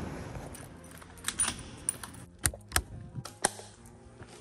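A quick run of sharp metallic clicks and clinks, about seven in two seconds, with a faint steady hum beneath.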